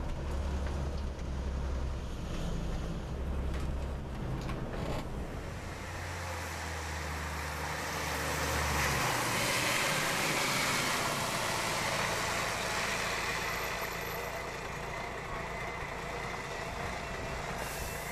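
Yellow Volvo city bus running: a steady low engine drone for the first half, then the broad rush of the bus driving past on a wet road, loudest around the middle and easing off.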